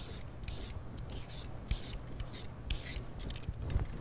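A handheld vegetable peeler scraping the skin off a chunk of daikon radish in short, irregular strokes, about two or three a second.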